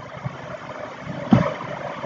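Steady background hiss of a quiet room picked up by a desk microphone, with a single short click about halfway through.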